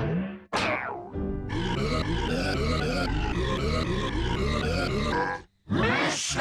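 Pitched-down, distorted cartoon soundtrack. A short burst and a falling sweep are followed by about four seconds of deep, dense music with a repeating rising figure, which cuts off shortly before a new burst at the end.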